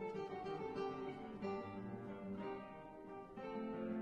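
Two classical guitars playing a duo piece together, a steady flow of plucked notes and chords.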